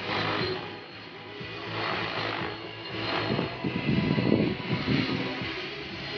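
Radio-controlled helicopter flying aerobatics, its rotor noise rising and falling in waves and loudest about four seconds in, with music playing underneath.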